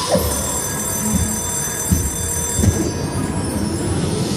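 Bally Fu Dao Le slot machine playing its electronic bonus sound, a cluster of high, steady chiming tones held for a couple of seconds, as a red envelope lands on the reels and sets off the Red Envelope Jackpot feature, over a low background of casino noise.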